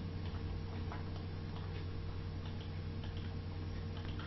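Low steady electrical hum and hiss from the recording setup, with a few faint ticks, likely mouse clicks.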